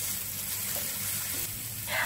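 Sliced spring onions and ground shallot-garlic paste sizzling in a frying pan as they are stirred with a spatula, a steady soft sizzle.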